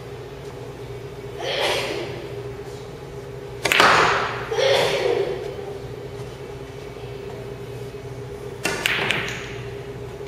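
Pool balls being struck on a pool table: a sharp clack of cue and balls about four seconds in, followed by more knocking as the balls roll and collide. There are lesser knocks near the start and another near the end, all over a steady low hum.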